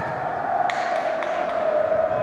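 A football struck once by a player's boot about two-thirds of a second in, a sharp click, with a weaker touch of the ball about half a second later. A steady hum and faint calls from players run underneath.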